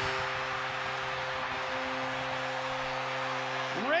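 Arena goal horn blowing one steady, held low chord over a cheering crowd, sounding a home goal: the overtime winner.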